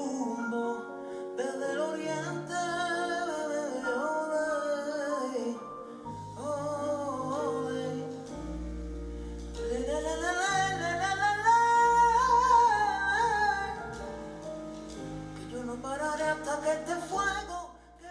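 Live flamenco-jazz fusion song: a male voice sings with a band, with electric bass notes coming in about six seconds in. The music cuts off near the end.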